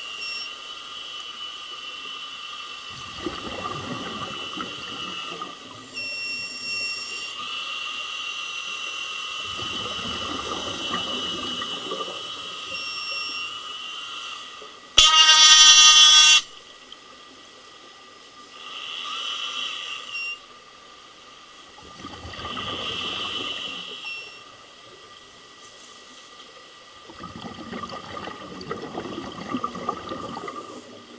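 Scuba regulator breathing heard underwater: a steady hiss on each inhale, then a bubbling rumble of exhaled air lasting two to three seconds, about every six seconds. About halfway through comes a single loud horn blast lasting about a second and a half.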